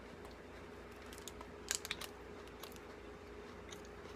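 Faint, scattered crunching of someone chewing a Met-RX Big 100 Crispy Apple Pie protein bar, its crisped-rice middle crackling in a few short bursts through the chewing.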